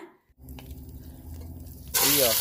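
Hot cooking oil in a pot, a low steady hum with a faint crackle of bubbling. At the very end a sudden loud sizzle starts as the ground pork belly mixture drops into the oil.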